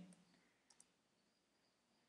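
Near silence with a few faint clicks from typing on a computer keyboard.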